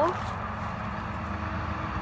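Steady low rumble of road traffic, with a faint steady hum through the middle.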